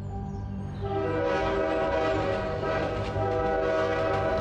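A train horn sounds one long steady blast, starting about a second in, over soft background music.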